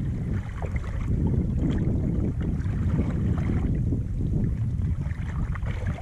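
Steady low rumble of wind buffeting the microphone on a kayak out on open water, with small water sounds against the hull.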